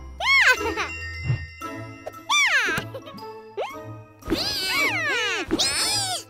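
Cartoon soundtrack: light music with jingling effects and wordless vocal sounds that swoop up and then down in pitch, twice in the first three seconds, then a busier stretch of layered swooping sounds near the end.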